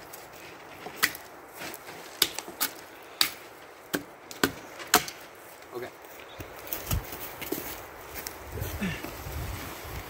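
A series of sharp wooden knocks and clacks, about seven in the first five seconds, as wooden poles and sticks of an A-frame are handled and knocked together. Softer rustling follows in the second half.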